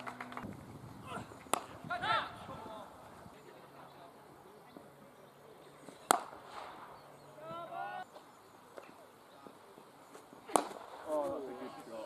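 Cricket bat striking the ball: three sharp cracks several seconds apart, with short shouts from players between them.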